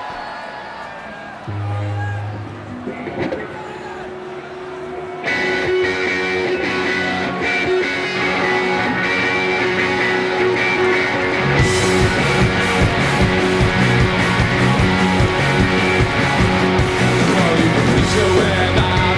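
Live rock band starting a song: a lone electric guitar comes in about five seconds in with sustained chords, and the drums and bass crash in at full volume a little past halfway.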